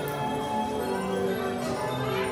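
Carousel band-organ music: a tune of held notes with bright, bell-like tones, playing while the carousel turns.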